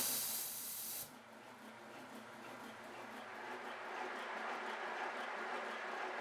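High-pressure air compressor's automatic moisture drain purging: a sudden hiss of escaping air lasting about a second. Then the compressor runs on, much fainter and steady, during the fill.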